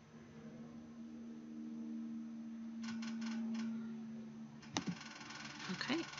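A quick run of computer mouse clicks about three seconds in and another single click near the end, over a steady low hum that holds one pitch for about four and a half seconds.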